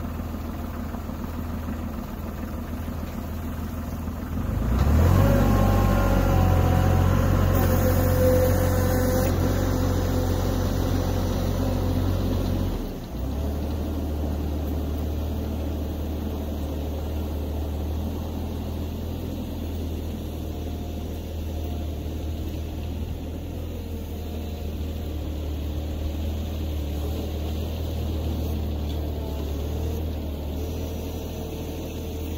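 Compact tractor engine idling, then throttled up about four and a half seconds in and running louder until it drops back suddenly near thirteen seconds, then running steadily as the tractor moves off with its front plow blade.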